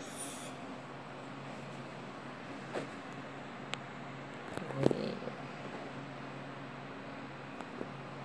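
Steady low hum with a few light clicks and one louder knock just before five seconds in: plastic being handled as a funnel is set into a plastic bottle.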